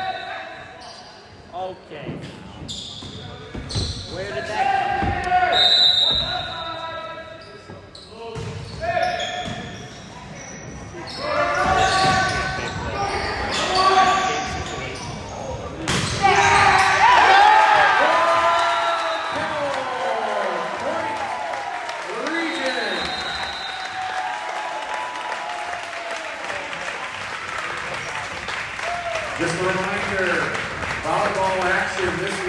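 Indoor volleyball rally on a gym floor: ball strikes, short sneaker squeaks and players' calls. About halfway through a sharp hit ends the rally, and a burst of overlapping shouting and cheering follows, the sign of match point being won, fading over the last seconds.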